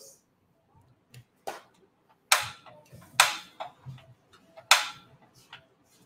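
A run of sharp, irregular clicks and knocks of hard plastic and metal, with about three louder clacks in the middle. They come from handling a portable butane camping stove and its gas canister while setting it up.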